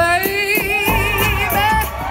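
An acoustic band playing live. A woman sings one long held note with vibrato, rising slightly, over upright bass and percussion.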